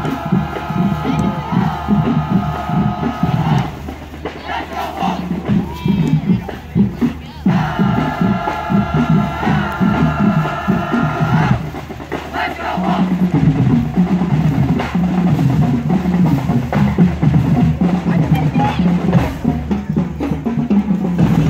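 Marching band drums playing a street beat as the band marches past, with two long held high tones of about four seconds each over it.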